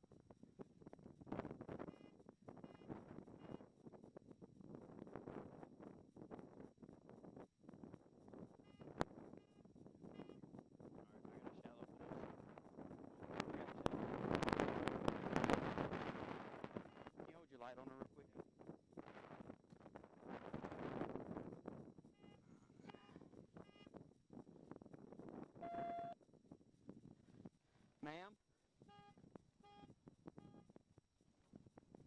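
Faint, muffled voices and police radio traffic with short electronic beep tones, and a louder rush of noise for a few seconds about halfway through.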